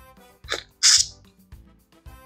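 A short, sharp breathy hiss from the taster's mouth or nose, loudest just under a second in and preceded by a smaller one about half a second in. Faint background music with steady held notes runs underneath.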